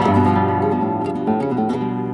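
Flamenco guitar playing a chord on the dominant, sounded at the start and left to ring and slowly fade: part of an ostinato alternating between tonic and dominant, as in a falseta.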